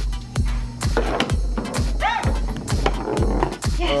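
Foosball game in play: the ball and the hard plastic players and rods clack and knock at irregular moments. Background music with a steady low beat runs underneath.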